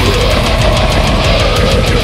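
Brutal death metal recording playing loud and dense, with rapid, evenly spaced hits running through it.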